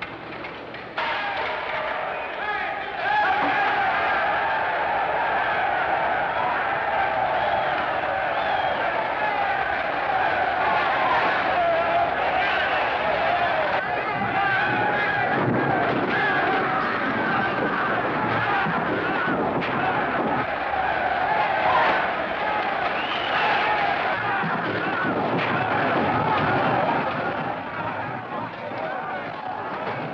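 A large crowd of rioting prison inmates shouting and yelling all at once, with no single voice standing out. It starts about a second in and turns loud at about three seconds, staying loud throughout.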